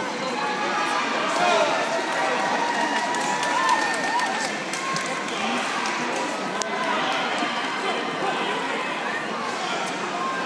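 Crowd chatter: many overlapping voices in a large hall, steady throughout, with one sharp click about two-thirds of the way through.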